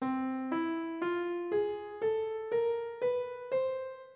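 The Parian scale (scale 3889) played as an ascending run of single piano notes, about two a second: C, E, F, G sharp, A, A sharp, B and the C an octave above. The last note is left ringing and fades out near the end.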